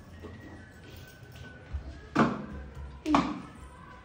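Two sharp knocks about a second apart, over a quiet background.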